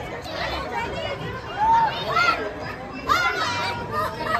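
Indistinct chatter of a crowd of children and adults, with children's high voices calling out over it.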